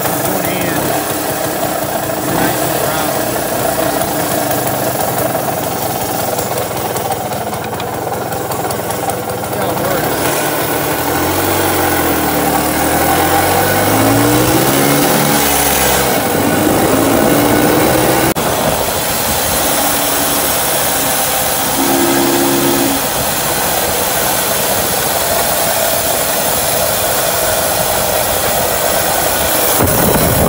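1958 Zündapp Bella R154K scooter's single-cylinder two-stroke engine running while being ridden, its pitch rising and falling with the throttle from about ten seconds in, then holding at a few steady pitches.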